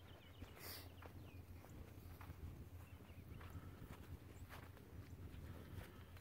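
Near silence: a faint steady low rumble with a few faint, scattered soft ticks.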